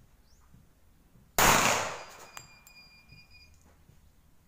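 A single shot from a Rock Island Armory 1911 pistol about a second and a half in: one sharp crack with a short echo. About a second later comes a faint metallic ringing that lasts about a second.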